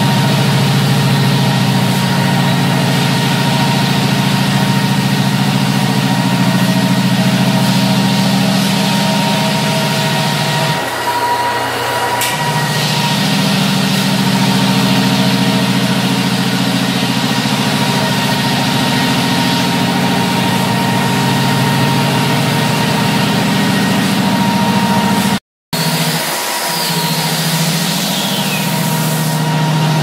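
Walk-behind drum floor sander running steadily as it sands an old solid-wood parquet floor: a loud motor hum with a steady whine above it, its low tone changing briefly about eleven seconds in. The sound cuts out for a moment near the end, then resumes.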